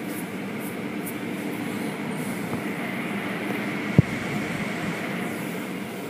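Automatic car wash working over the car, heard from inside the cabin: a steady rush of water spray and brushes against the body and glass, with a single sharp knock about four seconds in.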